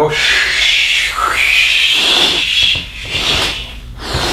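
A man's long, forceful exhalation through the mouth, a steady hiss of air emptying lungs filled by a full breath taken into the belly, then the mid-chest, then the upper chest. It weakens about three seconds in and tails off near the end.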